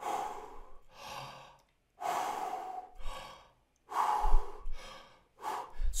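A man taking about three deep breaths, in and out, each one plainly audible. He is demonstrating abdominal (belly) breathing, inflating the abdomen as he breathes in.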